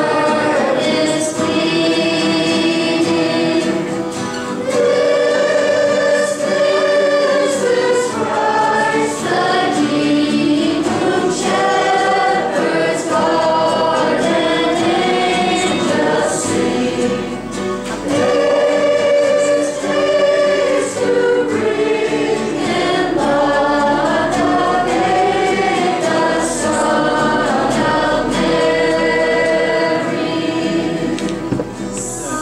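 A small group of girls' voices singing a Christmas carol together from hymnals, through microphones, with long held notes and no pause.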